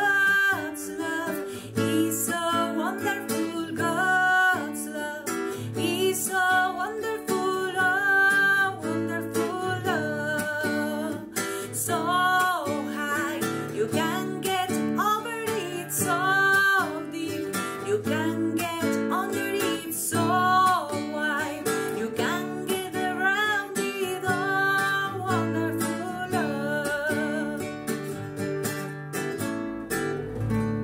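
A woman singing a song while strumming a nylon-string classical guitar. Her voice drops out near the end and the guitar keeps playing.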